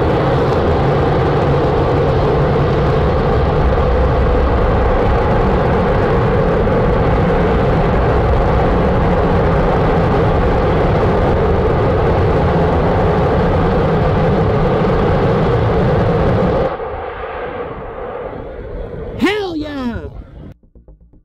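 RFA One rocket's first-stage engines firing in a static fire on the test stand, heard from about two kilometres away: a steady, loud rumbling noise that cuts off sharply about 17 seconds in as the engines shut down, leaving a quieter noise. A short voice-like cry rises and falls near the end.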